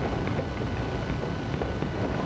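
Steady rumbling background noise, like wind on the microphone, with a few faint scratches of a pen writing on paper.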